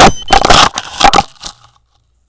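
A handful of crunching, scraping impacts over about a second and a half as an action camera tumbles and comes to rest in dry pine needles and dirt. The sound then cuts out completely.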